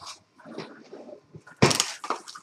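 Plastic wrap (Saran Wrap) being handled and pulled from its box: soft rustling first, then a loud, sudden ripping rustle near the end as a length of wrap is drawn off the roll.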